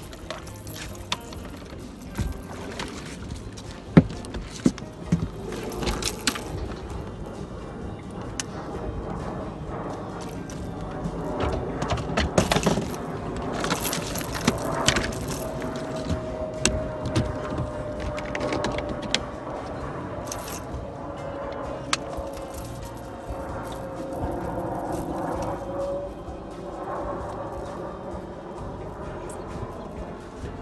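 Irregular clicks, knocks and rattles of fishing gear being handled on a boat deck while a landed catfish is unhooked. A faint steady tone slides slowly down in pitch through the second half.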